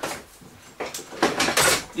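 Metal tools and fittings clinking and rattling as a hand rummages in a plastic socket-set case. The clatter starts a little under a second in and is busiest near the end.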